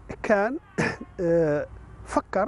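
Speech only: a voice talking in short phrases that the recogniser did not write down.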